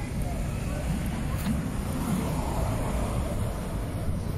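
Outdoor street sound at a small march: several people talking indistinctly over a steady rumble of road traffic and wind on the microphone.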